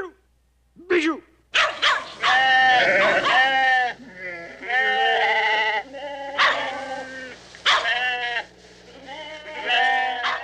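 A flock of sheep bleating. Many wavering calls overlap, starting about a second and a half in and thickest around two to four seconds in, then coming one or two at a time every second or so.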